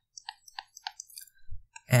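Stylus tapping and clicking on a tablet screen during handwriting: a quick run of light clicks through the first second, then a few sparser ones.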